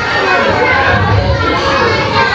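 Many young children chattering and calling out at once, a steady hubbub of overlapping voices in a large hall.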